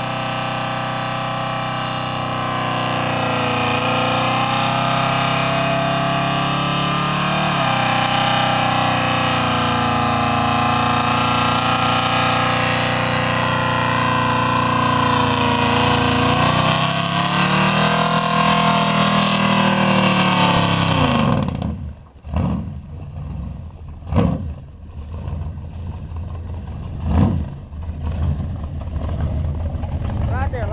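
Built big-block engine of a Chevy C30 dually held at high revs through a long burnout, its rear tyres spinning, with the revs sagging and climbing back around 7 and 17 seconds in. About 21 seconds in the revs fall off suddenly, and the engine settles low between three short throttle blips.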